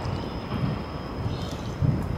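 Outdoor ambience: uneven low rumbling on the microphone, strongest near the end, with a faint steady high-pitched tone.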